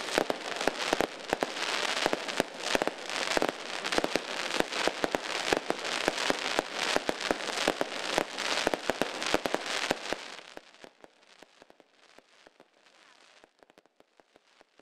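Fireworks going off: a dense run of rapid crackles and bangs that thins out about ten seconds in and fades to faint scattered pops.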